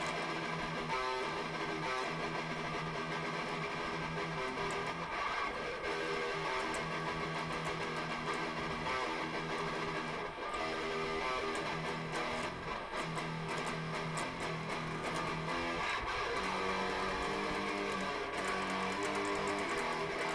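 Electric guitar played solo in an improvised freestyle, with held notes that change every second or so.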